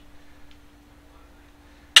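Quiet room tone with a faint steady hum, a faint tick about half a second in, and one sharp click near the end.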